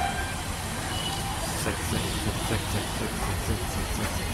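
Steady low rumble and hiss of background noise, with faint indistinct voices in the distance.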